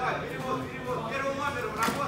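Indistinct voices talking and calling out around the mat, with a single sharp slap near the end.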